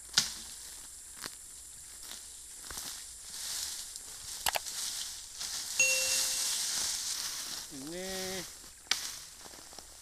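Dry resam fern stalks and brush rustling and snapping as they are pulled down by hand, with a few sharp cracks of breaking stems spread through.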